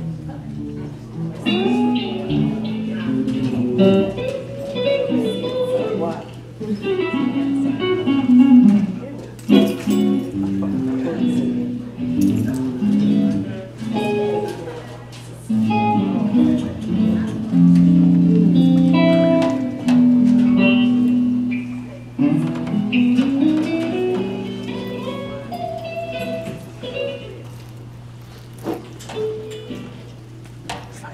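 Live church band music led by guitar, with a steady low tone held underneath, quieting near the end.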